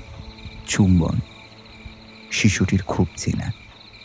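Steady chirping of crickets as night ambience, with two short wordless vocal sounds from a person, about a second in and again from two and a half to three and a half seconds in.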